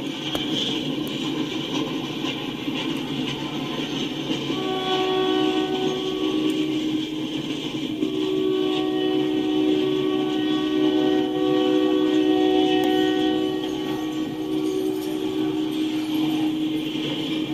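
Loaded freight cars rolling past with steady wheel-on-rail clatter. A train horn sounds over it in two long blasts: one from about four to seven seconds in, the other from about eight to fifteen seconds in.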